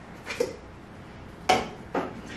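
Light metallic clinks and knocks from a stainless steel tray of tomatoes and the mill's hopper being handled while the tomato mill is loaded: a soft knock about half a second in, a sharp clink about a second and a half in, and another at the very end.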